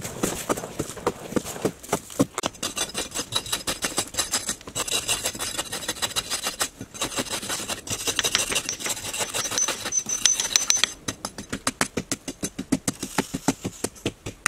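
Quick, regular strikes of a small hand digging tool chipping into a hard clay pit wall, about four knocks a second. Loose soil scrapes and trickles, giving a brighter hiss through the middle of the stretch.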